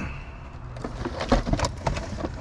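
Handling noise of a plastic musical carousel going back into its cardboard box: the box rustles, with a string of irregular light knocks and clatters from about a second in.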